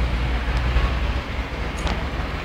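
Street background noise: a steady low rumble with a hiss above it.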